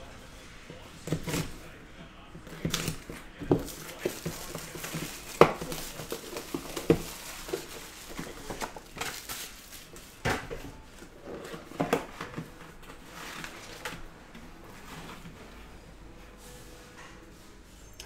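Hands unwrapping and opening a shrink-wrapped cardboard trading-card box: plastic wrap crinkling, with scattered light knocks and taps of cardboard and a plastic card holder every second or two.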